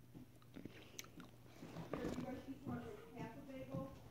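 Wet mouth clicks and sucking on a hard-candy lollipop, a few small ticks in the first second or so. From about halfway, an indistinct voice mumbles in short held tones.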